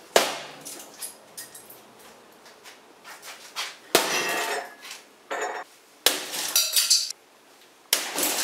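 A small hatchet striking a stacked hi-fi stereo system: a few hard blows a couple of seconds apart, each followed by rattling and clinking from the casing and loose parts.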